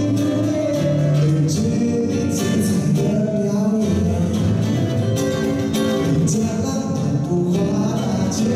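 A man singing to his own acoustic guitar accompaniment, a steady live solo performance.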